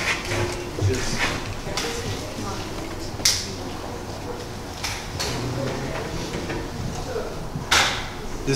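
Handling noise: a few sharp rustles and knocks, the loudest about three seconds in and another just before the end as a handheld microphone is raised, over faint voices in the hall.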